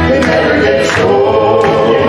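A mixed gospel vocal quartet of two men and two women singing in close harmony, with sustained chords over music that keeps a steady beat.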